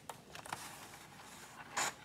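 Sliding blade of a paper trimmer drawn along its rail, slicing through a sheet of scrapbook paper with a faint scrape, starting with a couple of clicks. A short rustle of paper near the end.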